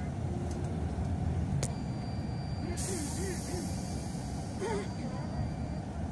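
Steady low rumble of a moving vehicle heard from inside, with a hiss that lasts about two seconds in the middle and faint voices in the background.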